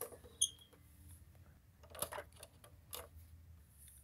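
Faint clicks and light rustles of plastic toy trucks being handled and moved on carpet, coming in a few brief taps about half a second in, around two seconds, and near three seconds.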